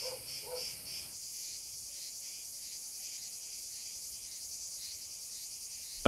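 Dense, high-pitched chorus of insects. It pulses a few times a second at first, then settles into a steady drone from about a second in.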